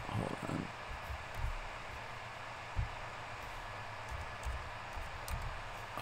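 Faint steady microphone hiss (room tone), with a few soft, low thumps: a small one near the start and another about three seconds in.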